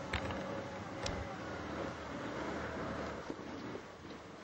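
Argo amphibious ATV on Escargo tracks, its engine running steadily as it crawls through deep snow. Two brief knocks come near the start and about a second in.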